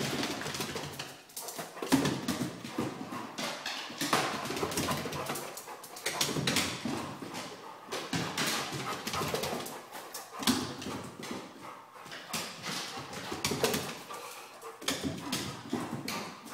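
A large dog's paws and claws thumping and clicking irregularly on wooden stairs as it runs up and down them, in rapid runs of steps with short lulls.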